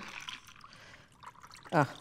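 A whiskey sour poured from a stainless steel cocktail shaker through its strainer into a martini glass: a faint, steady trickle of liquid filling the glass.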